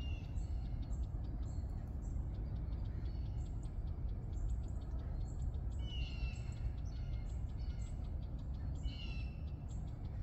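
Birds calling: short high chirps repeat throughout, with a louder downward-sliding call near the start, about six seconds in and again about nine seconds in, over a steady low rumble.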